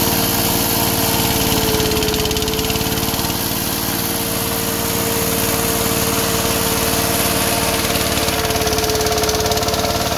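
Micromec mini rice combine harvester running steadily while harvesting, a loud even engine hum with a constant whine over it.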